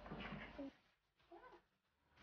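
A house cat meowing once, short and faint, about a second and a half in.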